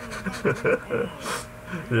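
Speech from the cartoon episode playing: a character's voice, with breathy sounds between words.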